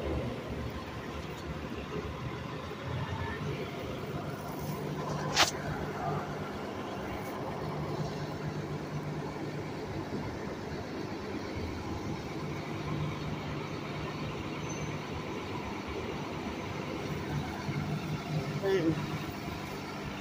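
City street traffic with a motor vehicle engine idling as a low, steady hum, and a single sharp click about five seconds in.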